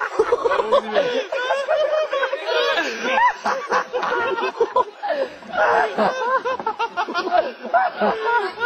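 Several people laughing together, their voices overlapping, with bits of speech mixed in.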